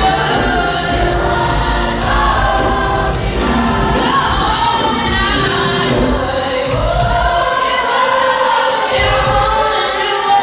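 Youth gospel choir singing, with a girl soloist's voice carried on a handheld microphone over the choir.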